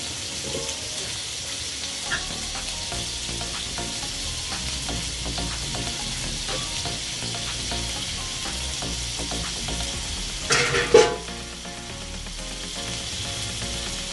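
Pre-boiled beef chunks frying in a stainless steel pan: a steady sizzle with scattered small crackles, and a short louder burst about ten and a half seconds in.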